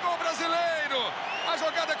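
A man's voice speaking: television football commentary.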